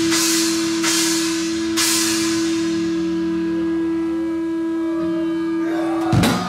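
Live metal band letting a distorted guitar note ring on as one steady, held tone, with three cymbal crashes in the first two seconds that then fade away. The band comes back in with a loud hit right at the end.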